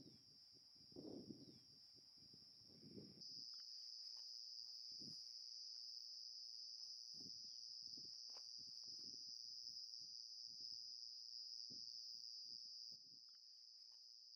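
Faint evening insect chorus: crickets giving a steady high-pitched trill, with a few soft low sounds in the first three seconds. The trill grows louder about three seconds in.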